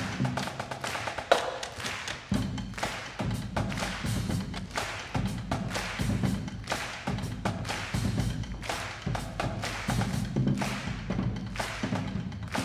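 Live percussion ensemble music: a fast, even stream of struck hits over a repeating low pitched line, with one louder, ringing strike just over a second in.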